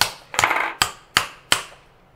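About five sharp knocks and clicks of hard reloading parts, the metal Lee Loader die pieces, striking over a wooden block within a second and a half, then stopping.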